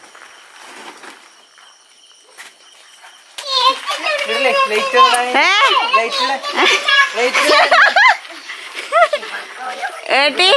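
After a quiet stretch, excited, high-pitched voices break out about three seconds in, calling out with swooping pitch in a surprised greeting.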